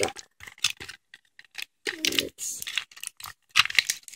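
A thin clear plastic bag crinkling in the hands as it is worked open, a string of irregular small crackles.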